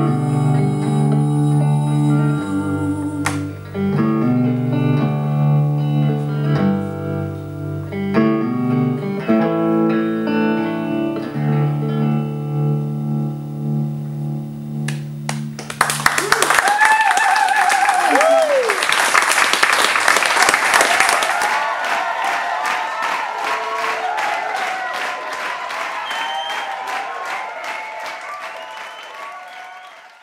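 Semi-hollow electric guitar playing an instrumental outro of picked notes and chords. About sixteen seconds in the guitar stops and the audience applauds and cheers, with a whoop; the applause fades out near the end.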